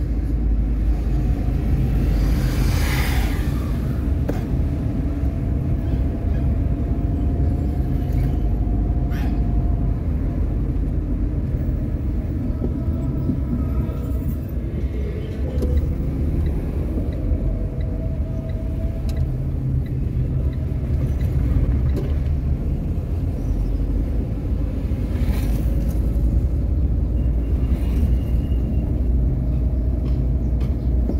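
Road noise inside a moving car: a steady low rumble of engine and tyres, with a faint wavering hum above it. Two brief louder swells of noise come about three seconds in and again near the end.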